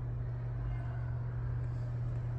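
A steady low hum with a faint rumble beneath it, unchanging throughout.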